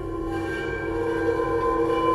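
A sustained chord of several steady tones swelling gradually in loudness: a cinematic riser accompanying an animated logo reveal.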